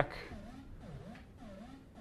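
Modular synthesizer voice stepped by an Intellijel Metropolis sequencer set to forward-and-back mode. It plays quiet short notes at about two a second, each swooping in pitch.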